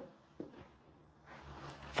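Faint sounds of a knee-raise drill: one soft tap of a sneaker on a rubber gym floor about half a second in, then faint movement noise.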